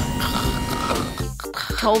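Cartoon machine sound effect: a garage vehicle lift whirring with a fast, even rattle as it lowers a truck, fading out after about a second.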